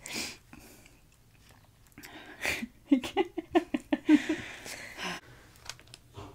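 Stifled, breathy laughter: a few short puffs, then a quick run of giggles from about three seconds in.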